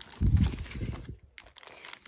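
Brown paper shopping bag rustling and being handled as a hand rummages inside and lifts out a boxed perfume, a dull rumble for about a second followed by a couple of light clicks.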